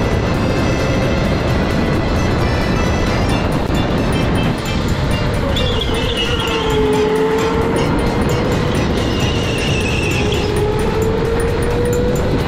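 Electric go-kart motor whining as it laps at speed, the pitch dropping through a corner about six seconds in and climbing again as it accelerates out, over a steady rumble of tyre and wind noise.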